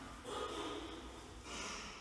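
A man's soft breathing close to the microphone: two faint breaths, the first about a quarter second in, the second about a second and a half in.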